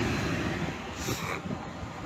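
Steady rushing noise of a running gas-fired makeup air unit, its blower moving air, with a brief rustle about a second in.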